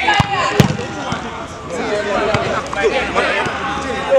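A football struck hard, with two sharp thuds in the first second, the second one louder. Players shout over the rest of it.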